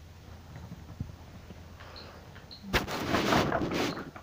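Baby activity jumper clattering and rattling as the baby starts bouncing in it: a sudden dense run of plastic knocks and rattles begins about three seconds in and keeps going.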